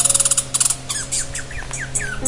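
High-pitched chirping calls: a fast buzzy trill for the first half-second, then a run of short chirps sliding down in pitch, about three a second. Soft background music plays underneath.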